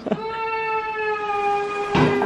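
A woman's voice holding one long steady note for about two seconds, sinking slightly in pitch toward the end.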